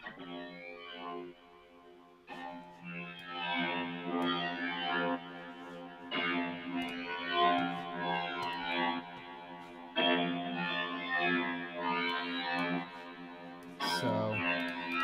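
Atmospheric synth patch built in the OSCiLLOT modular synth (Max for Live), playing sustained layered notes through its effects chain and Guitar Rig's Handbrake Blues preset. After a brief lull near two seconds in, new phrases come in about every four seconds.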